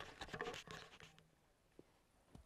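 Close rustling and scratching in grass as a golf ball is set down on the turf and feet shuffle beside it, a quick run of small clicks that dies away after about a second, followed by one faint click.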